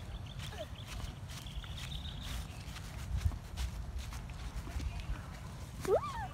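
Footsteps on grass with irregular soft knocks, over a steady low rumble of wind on the microphone; a faint high chirping is heard twice in the first half.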